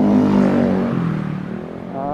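A motorcycle passing close in the opposite direction: its engine note is loudest about a quarter-second in, then drops steadily in pitch as it goes by, heard over the rider's own scooter engine and wind.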